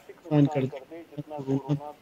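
Speech only: a man's voice talking in short bursts.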